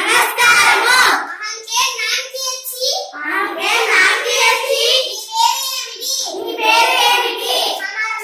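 Children's voices reciting phrases aloud, without a break.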